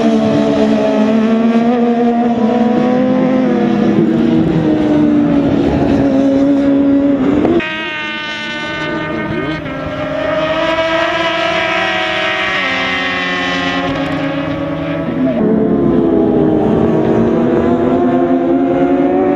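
Racing sportbike engines held at high revs, their pitch rising and falling as the bikes pass. About a third of the way in the sound cuts abruptly to a quieter engine note, then grows loud again near the end.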